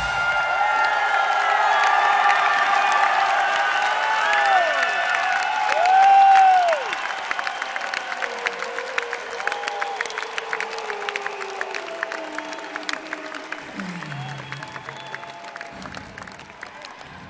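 Arena crowd cheering and whooping as the song stops, with the loudest yell about six seconds in, then steady clapping that slowly fades.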